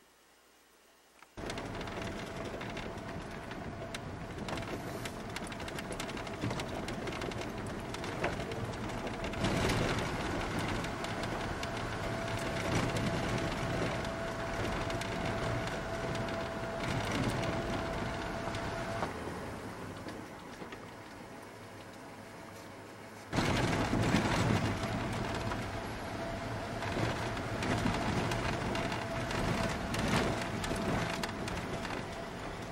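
Cabin noise of a vehicle driving a gravel road: tyres on gravel and the engine running, with a faint steady hum. It starts abruptly about a second and a half in after near silence, eases off for a few seconds past the middle, and comes back louder for the last several seconds.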